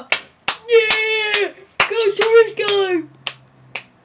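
One person clapping a few slow, scattered claps while letting out two long, high-pitched cheering whoops; the voice stops about three seconds in and a couple of last claps follow.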